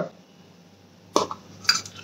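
Small round metal tin being opened by hand, its lid clinking twice, about half a second apart, in the second half.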